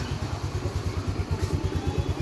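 Small motor scooter engine idling with a steady, even low pulsing.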